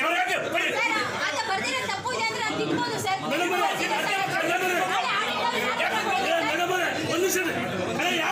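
Men's voices talking over one another in a crowded room: an argument in Kannada with several people speaking at once.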